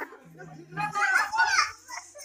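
A young child's voice, high-pitched and short, about a second in.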